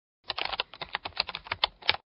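Typing on keys: a quick run of about fifteen keystroke clicks, roughly nine a second, stopping just before the end.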